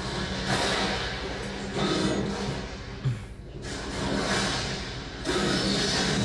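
Film soundtrack of a heavy thunderstorm: dense, steady rain noise with surges of thunder under music, and a sharp knock about three seconds in.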